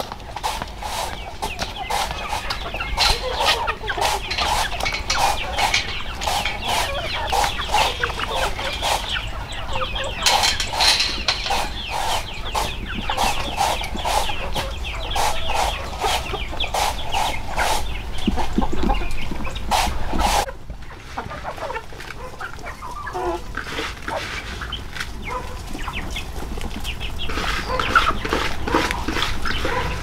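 A flock of domestic chickens clucking continuously. Many short sharp taps run under the clucking for the first twenty seconds or so, and the background changes abruptly about two-thirds of the way through while the clucking carries on.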